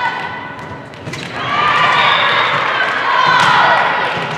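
Girls' voices calling out and cheering in a gym during a volleyball rally, several at once. A volleyball is struck with a thump a little after a second in, and again near the end.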